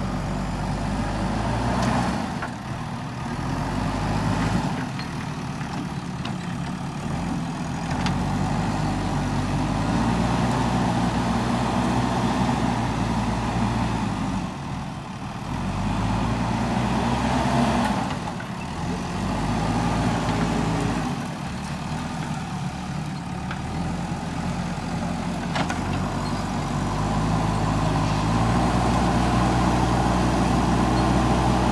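JCB 3DX backhoe loader's diesel engine working under load as the front bucket pushes soil, its revs rising and dropping back again and again.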